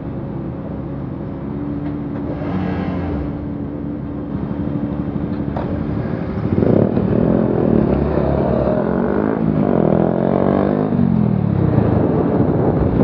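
Several motorcycle engines revving and passing close, their pitches rising and falling and overlapping, starting about six and a half seconds in over a steady hum of city traffic.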